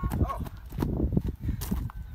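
Running footsteps of two people on a dry dirt-and-grass path, a quick run of dull thuds as they come to a stop near the end.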